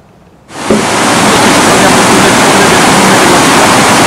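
Loud, steady rush of water pouring over a river weir, cutting in suddenly about half a second in.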